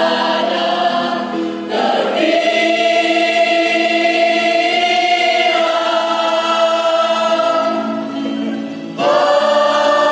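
Mixed choir singing a hymn in long held chords. There is a short break about two seconds in, then one long chord that fades near the end before the voices come back in strongly.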